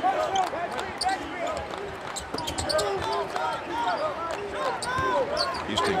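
A basketball being dribbled on a hardwood court in a sparse arena, with sneakers squeaking on the floor as the players cut and defend.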